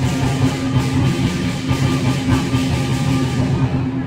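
Loud music with a driving drum beat.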